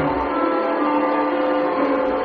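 The skater's program music playing, with several notes held steadily.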